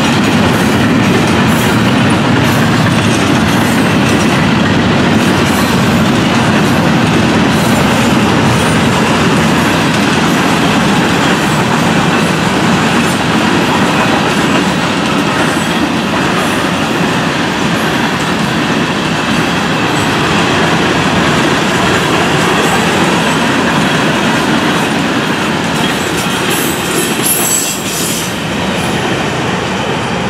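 Freight cars of a Florida East Coast Railway train rolling past at close range: intermodal well cars, then open hoppers and a tank car. Steel wheels on rail make a steady noise with scattered clicks, and a brief burst of sharper, higher-pitched metallic clatter comes a few seconds before the end.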